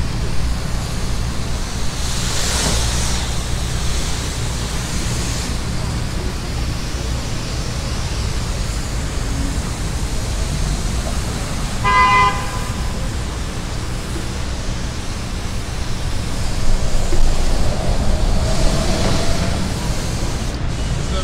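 Pressure washer wand spraying a concrete sidewalk, a steady hiss over the low rumble of street traffic. A single short vehicle horn toot sounds about halfway through.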